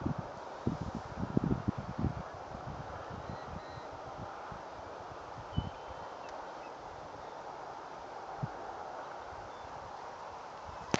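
Wind on a phone microphone outdoors: a steady hiss with low buffeting thumps, clustered in the first two seconds and once or twice later.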